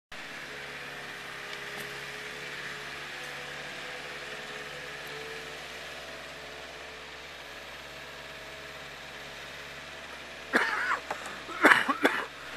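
Small forklift's engine running steadily at a low hum as it drives with a pallet of sod on its forks. Near the end, a few louder, sharper sounds break in over it.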